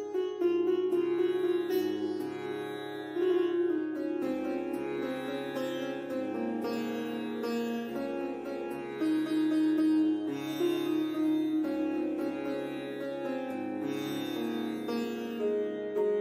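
Instrumental background music: a plucked-string Indian classical melody over sustained held notes, with the low notes shifting every couple of seconds.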